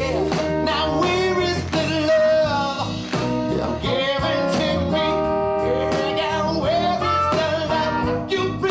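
Live band music: a male lead singer sings over drums, bass guitar and a full band.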